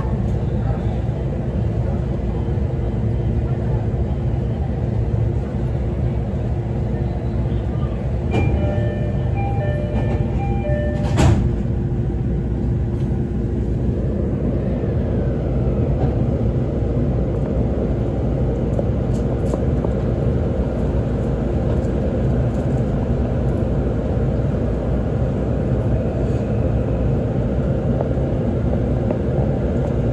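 Interior of a JR East E531-series electric commuter train stopped at a station: a steady hum of onboard equipment, then a repeated electronic door chime for a few seconds, ending in a single knock as the doors close. From the middle on, the electric traction motors and running noise rise as the train pulls away and gathers speed.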